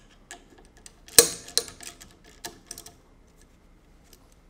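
Hand tool tightening steel bolts to lock a soft platen onto a belt grinder's platen backer: a handful of short, sharp metallic clicks at uneven intervals, the loudest a little over a second in.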